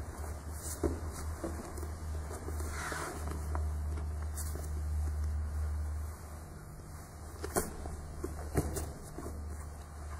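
Two grapplers in heavy cotton gis shifting on foam mats: fabric rustling and a few short, sharp knocks of hands and feet on the mat, about a second in and twice near the end, over a steady low hum.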